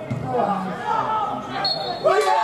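Players and spectators shouting during a football match, with the thud of the ball being kicked just after the start and a brief high whistle near the end.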